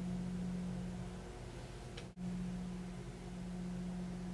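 Steady low electrical hum with a faint hiss, a background room tone that cuts out for an instant about two seconds in.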